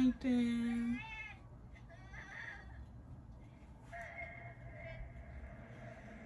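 A woman's closed-mouth hum, a drawn-out level 'mmm' broken once, in the first second; after it only quieter faint voices and a low steady tone.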